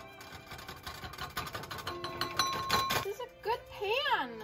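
Background music with a busy rhythm and some held notes; a high voice comes in near the end.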